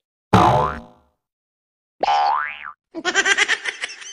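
Edited-in cartoon comedy sound effects: a springy 'boing' about a third of a second in, then a rising whistle-like glide at about two seconds. A burst of canned laughter starts at about three seconds.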